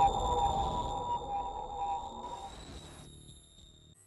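Electronic logo sting: a low rumble under sustained synthetic tones, with thin high ringing tones above, fading out about two to three seconds in.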